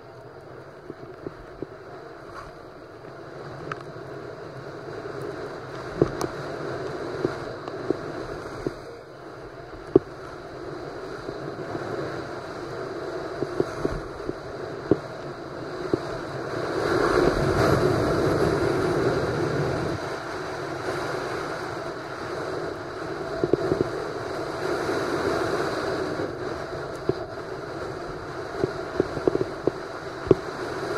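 Skis sliding over snow at speed with wind rushing over the microphone, a steady noisy hiss that builds to its loudest a little past halfway. Scattered sharp clicks and knocks come through over it.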